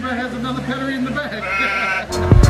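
A woman laughing, a long wavering laugh.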